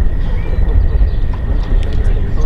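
Wind rumbling and buffeting on the microphone outdoors, uneven and gusting, with faint distant voices underneath.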